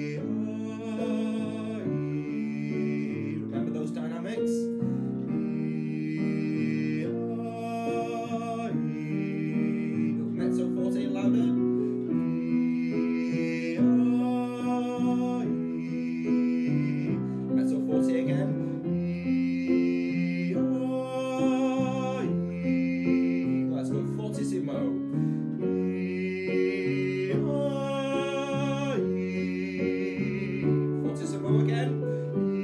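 A man sings short vocal warm-up phrases with vibrato over held piano chords, leaving short gaps between phrases for listeners to echo back. The singing grows somewhat louder after the first ten seconds or so, as the exercise builds from quiet toward very loud.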